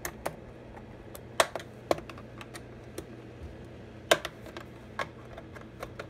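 Scattered sharp plastic and metal clicks and taps as the top cover of a Stihl MS 261 C-M chainsaw is seated and its quarter-turn fasteners are turned with a small socket tool. The loudest clicks come about a second and a half in and about four seconds in, over a steady low hum.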